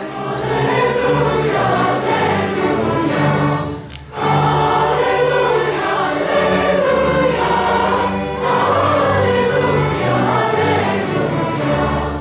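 A mixed high-school choir singing together in full voice. The singing breaks off briefly about four seconds in, between phrases.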